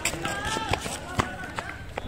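Background voices of players and onlookers calling out on a cricket ground, with a few sharp knocks, among them the bat striking the ball.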